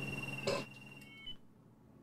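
A cordless telephone handset giving a steady high electronic tone, with a short click about half a second in; the tone steps briefly higher and cuts off a little over a second in.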